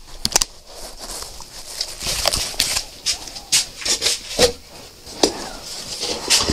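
Handling noise as a half-face respirator with twin filter cartridges is pulled on over the head and its straps adjusted: irregular rustles, clicks and light knocks.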